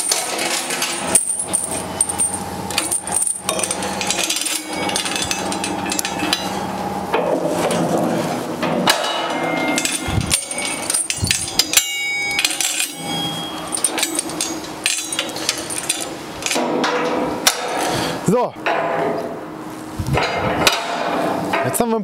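Steel chain rattling and metal clanking against a steel forklift work basket and the fork carriage as the basket is secured to the forks, with many irregular knocks and clinks.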